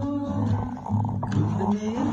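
Acoustic guitar being strummed while a man sings along.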